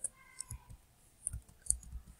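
Computer keyboard keys being tapped: about six quiet, separate clicks, at an uneven pace, as a line of code is edited.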